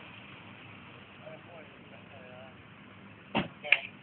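Faint voices talking, then a sharp thump near the end, followed at once by a short loud voice-like burst.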